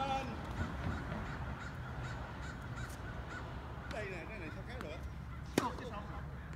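A tennis ball is struck once with a sharp pop, the loudest sound, about five and a half seconds in. Short wavering calls come near the start and again around four seconds in, over a steady low outdoor background hum.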